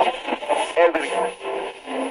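Short transition effect of a radio being tuned: snatches of a voice and brief tones come through a thin, tinny band with hiss, between bursts of heavy metal.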